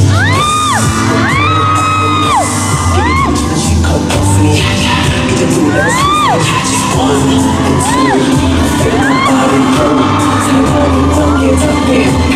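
Live pop music with a heavy, steady beat over a concert sound system. Over it, fans in the audience repeatedly let out high screams that rise and fall.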